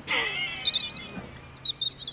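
Small bird chirping in short high calls, a couple about half a second in and a quick run of them near the end, over steady outdoor background noise. A brief louder noisy sound comes at the very start.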